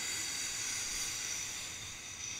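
A high, ringing hiss that slowly fades away, the decaying tail of a sharp hit.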